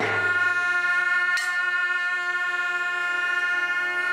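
Gyaling, Tibetan Buddhist shawms, playing long held notes. A percussion strike sounds at the start and another about a second and a half in.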